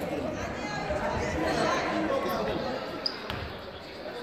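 Basketball bouncing on a wooden sports-hall floor during play, with indistinct voices of players and onlookers echoing in the hall and a single sharp knock about three seconds in.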